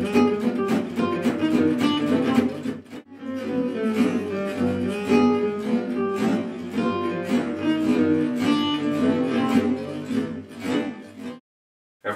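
Gypsy jazz acoustic guitars: a lead line in chromatic octaves over strummed rhythm guitar. The passage breaks off briefly about three seconds in, resumes slowed down, and cuts off shortly before the end.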